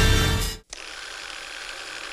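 Music fades out quickly about half a second in, then after a brief silent gap comes a steady mechanical clicking and whirring sound effect of film running through a reel.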